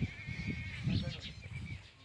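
A farm animal calling in the livestock yard, heard within the first second or so and dying away toward the end.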